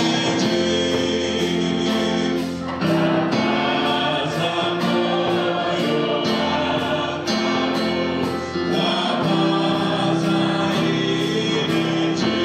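Congregation singing a gospel hymn together, sung in long held phrases with brief pauses between them, led by a man's voice over the church's microphone.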